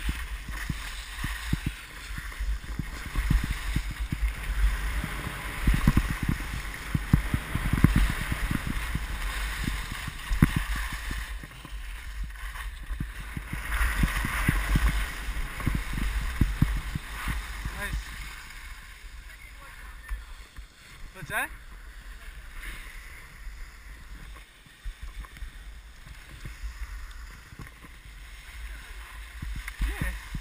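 Wind buffeting the microphone of an action camera worn by a moving skier, a gusty low rumble, with skis scraping and hissing over packed snow. The noise is heavier for the first half and eases after about 18 seconds as the run slows.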